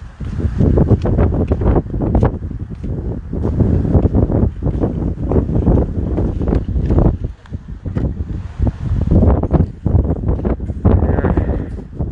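Wind buffeting a phone's microphone outdoors: a loud, uneven low rumble that rises and falls in gusts, with rustling and handling noise.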